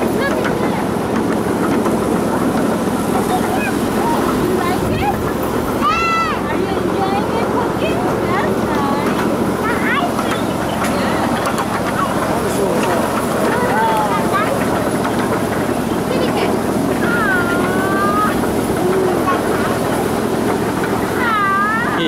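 Steady rushing noise, with several short high-pitched calls that glide up and down; the longest, about seventeen seconds in, lasts about a second.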